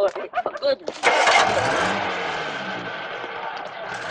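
A car engine starting about a second in, its revs rising and then falling back as it settles to running.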